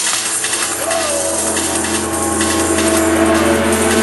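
Live electronic music in a breakdown: the drum beat drops out, leaving sustained synth tones over a steady bass drone, with a short pitch glide about a second in.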